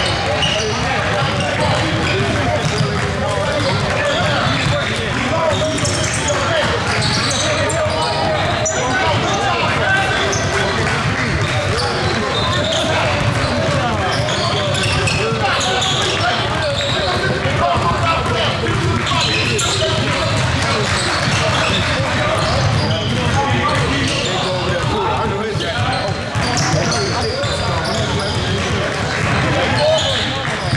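Several basketballs dribbled at once on a hardwood gym floor, a steady overlapping run of bounces, with voices talking in the hall behind.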